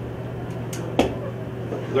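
Steady low room hum with two short clicks, then a sharper knock about a second in.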